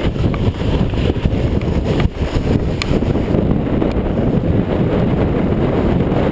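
Steady rumble of wind buffeting the microphone of a body-mounted camera as the snowboard rides down the slope, mixed with the board sliding over the snow.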